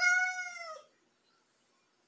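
A Siamese cat meowing once: a single meow just under a second long that drops in pitch at its end.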